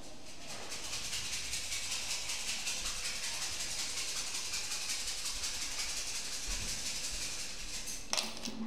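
A steady, rapid high-pitched rattling, like a shaker being shaken, starting just after the opening and stopping near the end.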